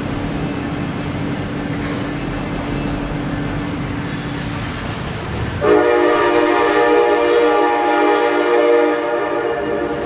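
Amtrak train's horn, a multi-note chord that starts about halfway through and is held for about four seconds. Before it there is a steady low hum and rumble.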